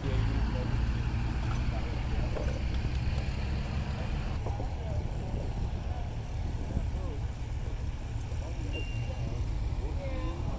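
Outdoor ambience: a steady low rumble with indistinct voices of people in the background.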